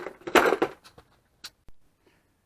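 Plastic parts organizer box being handled, its small metal parts rattling and clattering inside, then a few sharp clicks.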